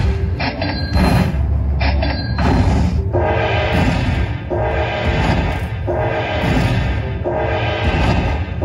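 Dragon Link 'Happy & Prosperous' slot machine's bonus payout sounds: machine music with a booming chime that repeats a little faster than once a second as each coin value is tallied into the winner meter.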